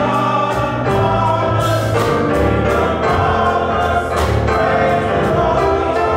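Gospel choir singing with a live church band, with bass, drums and keyboard, played at a steady beat.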